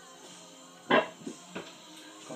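Faint background music, with one sudden loud short sound about a second in and two weaker ones shortly after.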